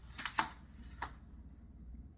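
Short rustles and taps of handling, a few in the first second or so, then only faint room tone.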